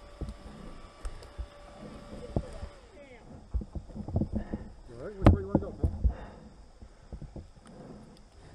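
Irregular knocks and clunks of rocks being handled in a shallow creek bed around a stuck dirt bike, with a loud thump about five seconds in. A steady hum runs through the first three seconds.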